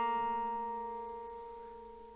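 A long-neck bağlama (uzun sap saz) note, plucked just before, ringing on and fading away steadily as one sustained pitched tone.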